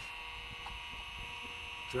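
Steady hum and whine of a running PC with a Seagate ST-4038 MFM hard drive spinning while it formats, with a couple of faint ticks. The drive's spindle runs quietly.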